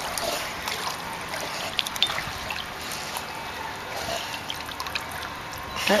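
Pool water trickling and lapping, with small splashes, as a flat-coated retriever swims. A woman's voice starts right at the end.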